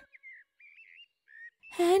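Faint bird chirps: three or four short, high whistled notes, one of them rising, before a voice starts near the end.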